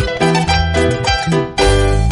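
Instrumental music on an electronic keyboard: sustained melody notes over a bass line, with a short break about one and a half seconds in before the fuller accompaniment comes back in.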